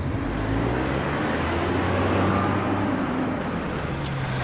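Mini Cooper hatchback driving along a road: a steady engine hum with tyre and road noise.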